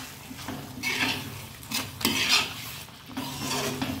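A slotted metal spatula scraping and stirring thick paneer-and-pea gravy in a metal kadhai, in several strokes.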